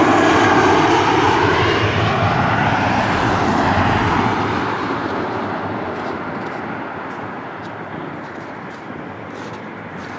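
Airbus A321 jet airliner on final approach passing low overhead, its engine noise loudest in the first few seconds and then fading steadily as it moves away toward the runway.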